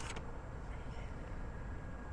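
A brief rustle as a plastic scoop of hydrated lime is lifted out of its bag, then a faint, steady low background rumble.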